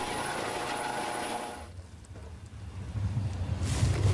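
Eurocopter EC155 helicopter running: a high turbine whine over rotor noise, which breaks off abruptly about a second and a half in. A low rumble then builds towards the end.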